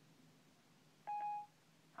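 An iPhone 5's Siri chime: one short electronic beep about a second in, the tone Siri plays when it stops listening and begins processing the spoken request.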